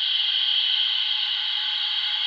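Steady electronic hiss, like fizzing soda, from the small speaker of a DX Rabbit Tank Sparkling Full Bottle toy, set off by an accidental press of its button.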